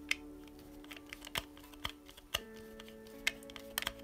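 Scattered small clicks and ticks of a hand screwdriver turning a small screw partway into a plastic RC car chassis part, with the plastic parts being handled, about half a dozen in all. Soft background music with held notes runs underneath.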